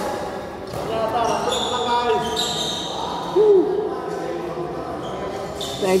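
Echoing sound of a badminton hall: people's voices and calls, short high squeaks of shoes on the court floor, and a few sharp knocks.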